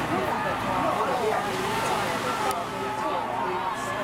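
Several people talking at once, overlapping conversation among onlookers, with a single sharp click about two and a half seconds in.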